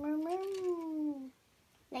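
A young girl's voice holding one long drawn-out note that rises a little and then falls in pitch, stopping just over a second in.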